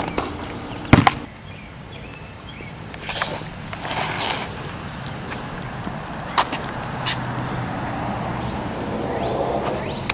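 Outdoor background noise with a basketball striking hard: one loud hit about a second in, followed by a few scattered scuffs and a single click later on.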